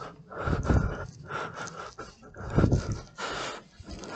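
A man breathing hard close to the microphone, with two heavy breaths about half a second and two and a half seconds in.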